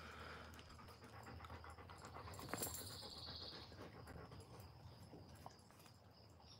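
Faint panting of an Alaskan Malamute puppy.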